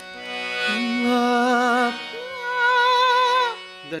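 A man sings a held note with vibrato over a harmonium's steady reed chord. About halfway through he jumps up an octave into falsetto and holds the higher note with vibrato: a demonstration of the octave switch into falsetto that is the first step of yodeling.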